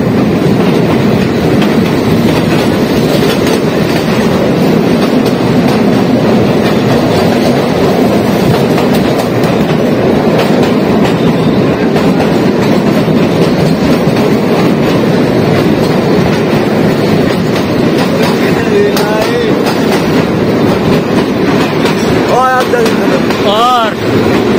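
Narrow-gauge toy train running through a long rail tunnel: a loud, steady roar of wheels on rails, enclosed by the tunnel walls. Near the end a few short, wavering high squeals rise over it.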